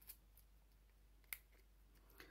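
Scissors cutting at the seal on a deodorant tube: a few faint snips and clicks, the sharpest a little past the middle, against near silence.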